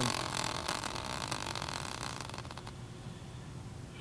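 Tabletop prize wheel of team logos spinning and coasting to a stop: a rushing whir with fine rapid ticks that thin out and fade about two and a half seconds in.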